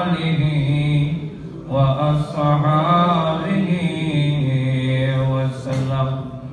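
A man chanting the Arabic salawat (blessing on the Prophet) into a microphone in a slow, melodic voice, holding long drawn-out notes, with a short pause for breath about a second and a half in.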